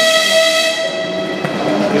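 A single steady, high-pitched railway whistle tone that fades out about one and a half seconds in, over the hubbub of a station platform.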